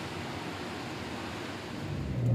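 A steady, even hiss of background noise, with no distinct sounds standing out.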